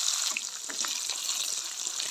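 Pieces of meat sizzling in hot oil in a wok: a steady hiss with small crackles and pops.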